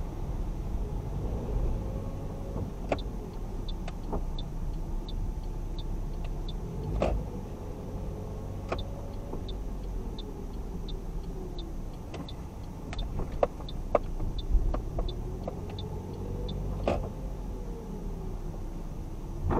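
Car driving slowly through a multi-storey car park, heard from inside the cabin: a steady low engine and road rumble with scattered sharp knocks. A faint, regular high tick repeats about every two-thirds of a second.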